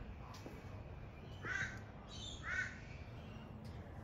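A bird calling twice outdoors: two short calls about a second apart, each rising and falling in pitch.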